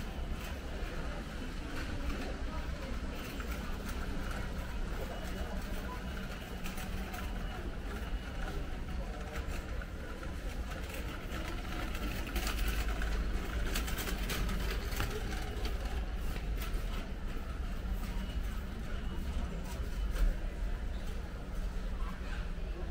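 Busy warehouse store ambience: indistinct chatter of shoppers over a steady low hum, with a run of clicking and rattling about twelve to sixteen seconds in.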